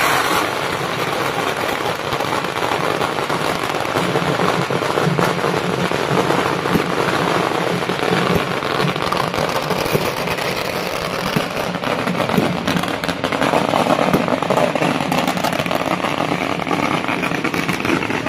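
A long string of firecrackers going off without a break, a dense, rapid crackle of small bangs.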